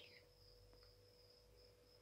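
Near silence, with only a faint, steady high-pitched tone and a fainter steady hum.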